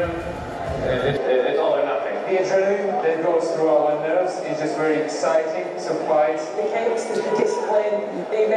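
A man's voice speaking, not the interview itself.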